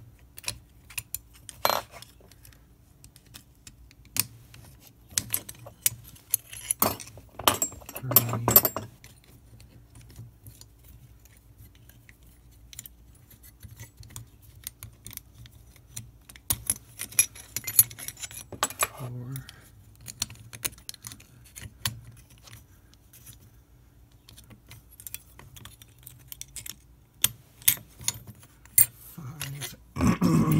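Steel lever-lock parts of an antique Folger Adams detention lock clicking and clinking against each other and the lock case as they are handled. Scattered sharp ticks, with a longer rattle about eight seconds in and another around eighteen seconds.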